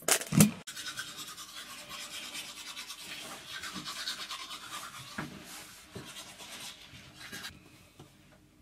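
A couple of loud knocks from the camera being handled, then someone brushing their teeth: a steady run of quick scrubbing strokes that dies away shortly before the end.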